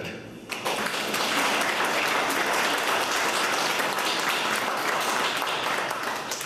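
An audience applauding: many hands clapping together in a dense patter that starts about half a second in and dies away near the end.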